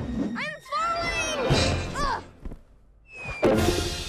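Cartoon soundtrack: a puppy character's voice yelping in several rising-and-falling glides over music, then a sudden thud about three and a half seconds in.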